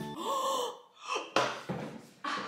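A woman's loud, drawn-out gasp of mock alarm, rising then falling in pitch, followed by a shorter gasp and a sudden short knock about one and a half seconds in.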